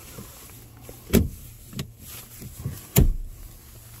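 Two sharp knocks about two seconds apart, with a few lighter clunks between, from the rear jump seats and storage of a Toyota Tacoma cab being handled.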